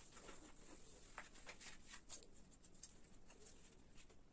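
Faint, scattered rustling and light scratching of paper as a glued sheet is folded over and pressed flat by hand.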